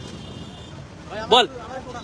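Steady street traffic noise, with a man's voice heard briefly a little past a second in.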